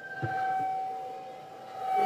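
A public-address loudspeaker system ringing with a steady high-pitched feedback tone. Under it a crowd shouts back in answer to a call-and-response greeting, a burst that swells just after the start and fades within about a second.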